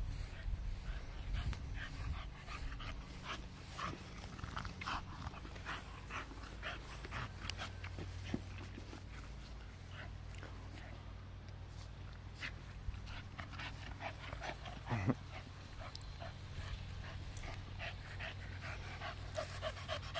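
Blue Staffordshire bull terrier panting while mouthing and chewing an old boot, with scattered short clicks and rustles throughout.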